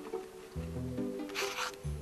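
Background music with held notes, and a short rustle of origami paper being pressed and folded a little past the middle.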